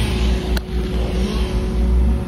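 Engine running steadily: a low rumble with a steady hum, and a single short click about half a second in.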